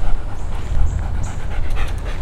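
A dog panting, its breaths coming in a quick rhythm, over a strong low rumble on the microphone.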